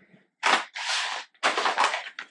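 Hard plastic blister packs of swim jigs being handled on a table: a sharp clack about half a second in, then crinkling plastic and a few more clicks.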